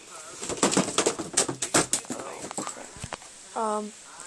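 A quick run of sharp plastic clicks and knocks as hard toy figures and their packaging are handled and moved about. Near the end, a short hummed voice sound.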